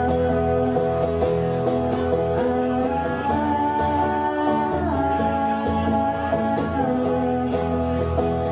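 A solo singer accompanying himself on acoustic guitar, live through a PA: long held sung notes that slide from one pitch to the next every couple of seconds over steady guitar playing.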